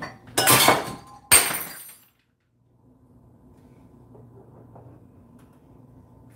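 Glass breaking: two loud crashes about a second apart, the second a sharp smash with ringing shards.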